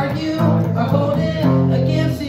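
Gretsch hollow-body electric guitar playing strummed chords through an amplifier, changing chord about half a second in and again about a second and a half in.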